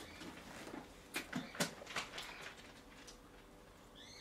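Faint rustling and light ticks of a Bible being picked up and its pages leafed through, with a few short crisp ticks about a second in and softer rustling after.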